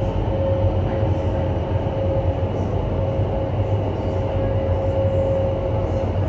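Steady roar of an indoor skydiving wind tunnel's fans and rushing airflow, heard through the flight chamber's glass wall, with a steady hum running through it.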